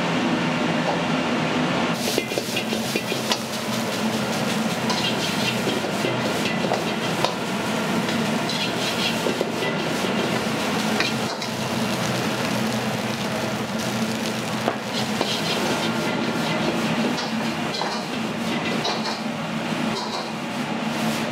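Fried rice being stir-fried in a wok over a high gas burner: a steady burner rush and a sizzle that grows louder about two seconds in. A metal ladle repeatedly clacks and scrapes against the wok.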